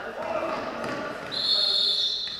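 Referee's whistle blown in one long, steady shrill note starting about a second and a half in, after players' shouts.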